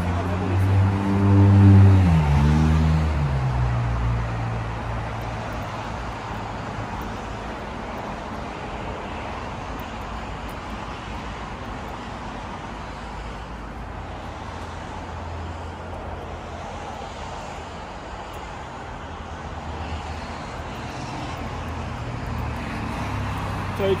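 A motor vehicle passing close by: its engine note holds steady, is loudest about two seconds in, then drops in pitch as it goes past. After that, a steady hum of road traffic.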